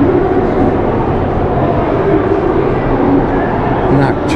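Steady crowd chatter: many voices talking at once with no single one standing out.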